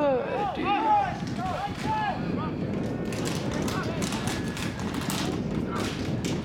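Rugby players shouting on the field as a ruck forms: a few rising-and-falling yelled calls in the first two seconds, then a run of short sharp crackles.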